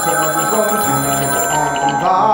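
Musical-theatre accompaniment plays under a telephone ringing, and the ring stops shortly before the end.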